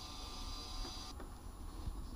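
Faint steady background hiss with a low hum underneath, the hiss dropping off suddenly about halfway through.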